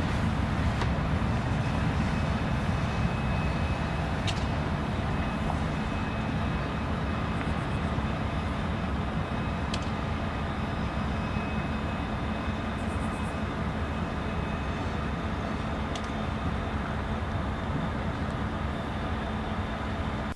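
Steady rumble of a train running out of sight, with a constant low hum, slowly fading over the stretch; a few faint clicks come through it.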